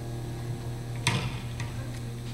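A steady low hum with one sharp knock about a second in, followed by a couple of faint ticks.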